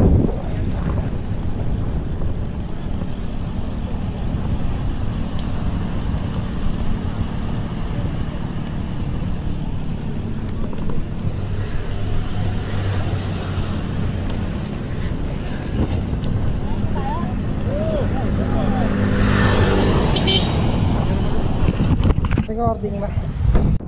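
Wind rushing over the camera microphone on a moving road bike, with tyre and road noise underneath. A low steady hum joins in the second half and the noise is loudest a couple of seconds before the end.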